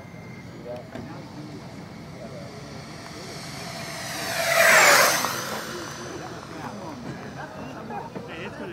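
Four electric ducted fans of a radio-controlled Freewing AL-37 airliner model in a low fly-by. The whine swells to a loud peak just under five seconds in, drops in pitch as it goes past, then fades.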